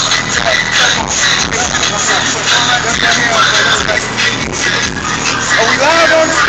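Hip-hop beat playing steadily through the aftermarket car stereo of a '92 Chevy Caprice, a 7,500-watt system, with men's voices talking over it.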